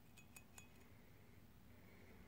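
Near silence, with three or four faint metallic clinks with a short ring in the first half-second as the steel shift slider of an M21 Muncie gearbox is handled.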